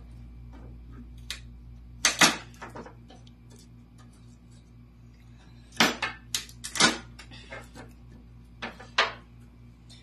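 Meat cleaver knocking on a wooden cutting board as garlic cloves are struck with the blade: a quick pair of sharp knocks about two seconds in, a cluster of about four near the middle, and one more near the end.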